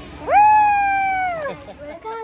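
A child's voice in one long, loud, high-pitched shout, sliding up at the start, held for about a second and falling away at the end.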